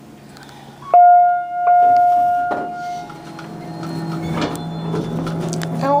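Otis Series 1 elevator hall lantern arrival chime: an electronic tone starting suddenly about a second in and held for about two seconds. It is followed by the elevator doors sliding open, with a steady low hum building.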